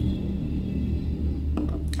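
A steady low hum fills the room, with a couple of faint clicks near the end.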